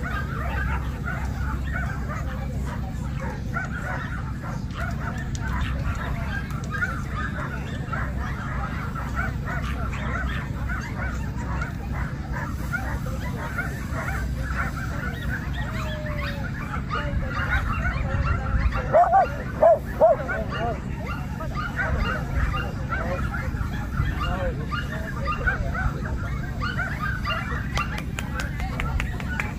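Dogs barking repeatedly over a steady background of people talking, with a cluster of louder barks about two-thirds of the way through.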